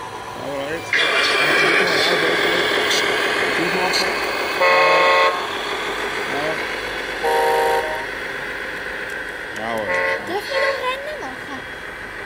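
A model truck's horn sounds two short toots about two and a half seconds apart, the second lower-pitched, over a steady engine sound that starts suddenly about a second in.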